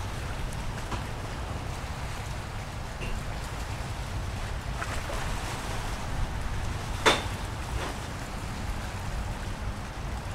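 Wind on the microphone over open water: a steady low rumble and hiss, with one sharp click about seven seconds in.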